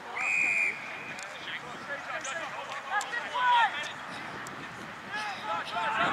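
A short, steady, high-pitched umpire's whistle blast just after the start, followed by scattered distant shouts and calls from players on the football ground.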